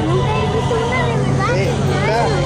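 Background voices talking over a steady low hum.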